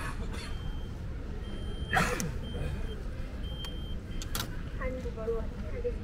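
Railway ticket vending machine returning the IC card and issuing the ticket: short high beeps repeating every second or so, a few sharp clicks, and one louder clatter about two seconds in, over a steady low hum of station background noise.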